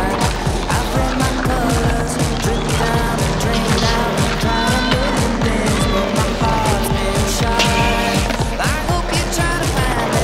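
Background song with a steady drum beat and bass over the skateboarding footage.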